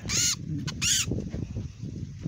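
A bird gives two short, high-pitched calls about 0.7 s apart, over low rumbling handling noise.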